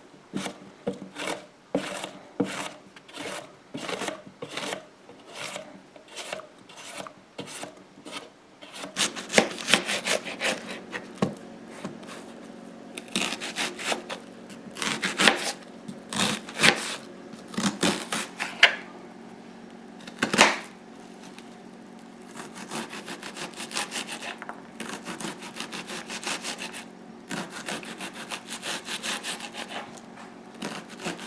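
Yellow squash being slid over a plastic mandoline slicer's blade in steady rubbing strokes, about two a second. About a third of the way in, this gives way to a kitchen knife cutting an onion on a plastic cutting board: slower cuts at first, then quicker dicing strokes, over a faint steady hum.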